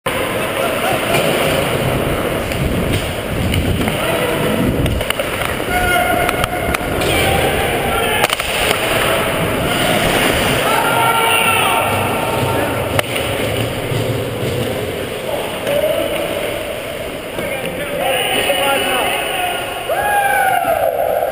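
Ice hockey play heard from on the ice: skate blades scraping, sticks and puck knocking, with a few sharp knocks, and players' short shouts echoing in the rink.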